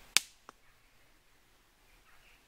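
A dry stick snapping once with a single sharp crack, then a much fainter click about a third of a second later, as a deer would make moving off through the undergrowth.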